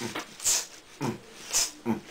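Short, breathy human vocal noises in quick separate bursts, about two a second, some with a sharp hissing 'ts' sound, just before singing starts.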